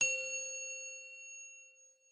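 A single metallic chime struck once, ringing with several clear bell-like tones that fade away over about two seconds: the sound effect of a channel logo intro.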